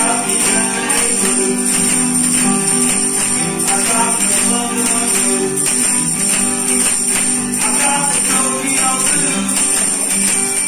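Several acoustic and electric guitars strumming a blues together at a steady beat, with a tambourine jingling in time.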